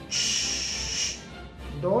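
A man making a long "shh", a steady hiss lasting about a second. It is the sound that voices a rest in spoken rhythmic reading.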